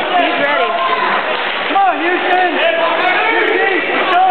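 Spectators and coaches at a wrestling match shouting and calling out, several voices overlapping at once.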